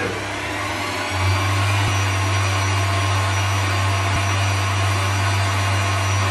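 Stand mixer running on speed 3, its whisk beating eggs for sponge cake batter. A steady motor hum that gets louder about a second in, with a few faint ticks.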